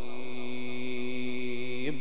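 A man's voice holding one long, steady note of Quran recitation (tajweed) into a microphone, breaking off just before the end.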